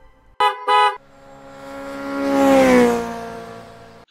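Two short horn toots, then a motor vehicle passing by: it swells to its loudest near the end of the third second, its pitch drops as it goes by, and it fades away.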